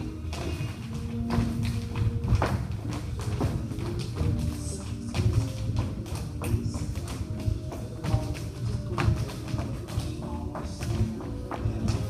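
Recorded music playing, with the tap shoes of a group of dancers clicking and striking a wooden floor in irregular clusters of sharp taps.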